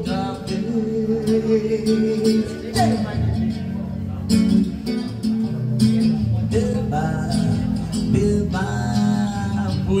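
A man singing with his own amplified acoustic guitar, played live through a small PA, with long held vocal notes over the strummed accompaniment.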